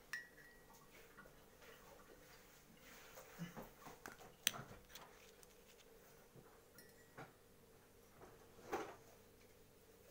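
Near silence in a small room, broken by a few faint, sharp clicks and light taps of small objects handled on a tabletop.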